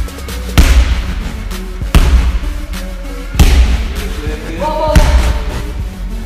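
A weighted Suples slam ball slammed onto a wrestling mat four times, about one and a half seconds apart, over background music with a steady beat.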